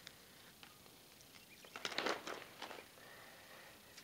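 A metal tool scraping and crunching against lumps of partly coked bituminous coal, in a short run of gritty scrapes about two seconds in, with quiet around them.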